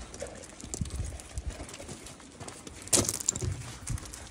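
Vizsla dogs moving about on loose gravel: irregular crunches and scuffs of paws on the stones, with a louder scrape about three seconds in.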